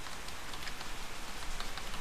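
Steady background hiss with faint, scattered keyboard clicks as a word is typed.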